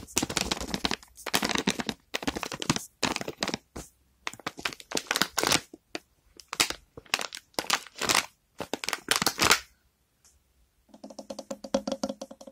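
Fingers tapping and scratching on household objects in quick clusters of sharp taps and clicks, ASMR-style, pausing for about a second near the end. Faster tapping then starts over a steady low tone.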